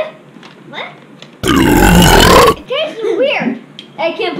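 A loud, drawn-out human burp lasting a little over a second, starting about a second and a half in, followed by a brief voice.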